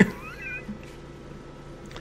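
A single faint, high-pitched wavering cry lasting about half a second, heard just after the start over quiet room tone, like an animal's call.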